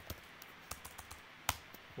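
Typing on a computer keyboard: a few scattered key clicks, with one louder keystroke about one and a half seconds in.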